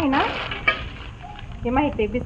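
Plastic snack packets crinkling and rustling as hands pack them into a steel container, with one sharp tap a little under a second in.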